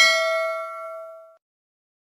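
Notification-bell 'ding' sound effect of a subscribe-button animation: one bright chime, loudest at its start, that rings out and fades away within about a second and a half.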